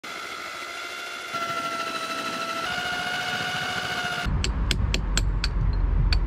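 An electric drill motor running with a steady whine, its pitch stepping up or down twice. About four seconds in, it gives way to a heavy low rumble with sharp knocks, about four a second.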